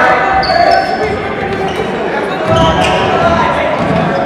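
A basketball bouncing on a hardwood gym floor during play, with sneakers squeaking and voices of players and spectators, echoing in a large hall.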